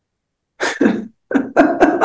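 A person coughing after about half a second of silence: one sharp cough, then a quick run of short coughs.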